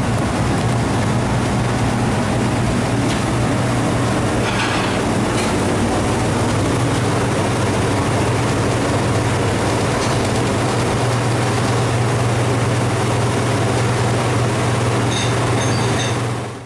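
Steady loud drone of commercial kitchen machinery, the fans of a conveyor pizza oven and its hood, with a low hum under an even rush and a few faint clicks.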